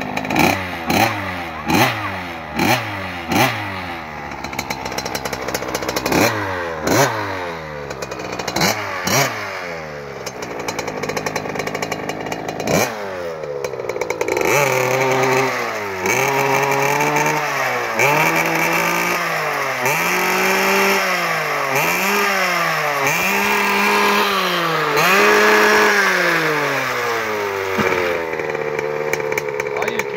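Small two-stroke kids' dirt bike engine running, its throttle blipped in quick sharp revs that each fall away. About halfway in, the revs change to longer rises and falls every second or two, before settling back to idle near the end.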